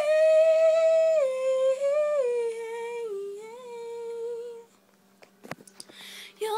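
Young woman's voice singing unaccompanied, a held, wordless line that steps down in pitch over about four and a half seconds and then stops. A few sharp clicks follow in the pause.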